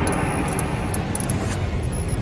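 Loud, dense rushing noise from an intro soundtrack, with a few brief high-pitched chirps.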